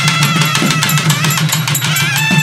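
Tamil naiyandi melam folk music: a nadaswaram-like double-reed horn playing a wavering melody over a steady run of thavil drum strokes.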